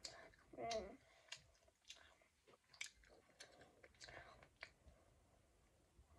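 A child chewing a soft hotteok, with soft mouth clicks and smacks throughout. A short vocal sound just under a second in is the loudest moment.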